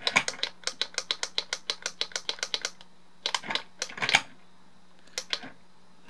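Small plastic clicks from a Robocar Poli remote-control toy car and its two-button handset as it is driven forward and back. A fast run of about ten clicks a second lasts nearly three seconds, followed by a few short groups of clicks.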